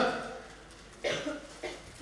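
A man's short cough about a second in, followed by a smaller second cough.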